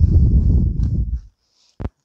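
A kitchen knife sawing through a baked bagel on a wooden cutting board: a loud, low, rough rasp of quick strokes for just over a second, then a single sharp click near the end.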